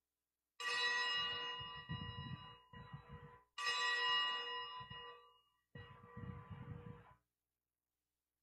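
Altar bells rung at the elevation of the consecrated host during Mass: two bright, ringing peals about a second in and at about three and a half seconds, each fading over a second or two, then a softer third peal near six seconds.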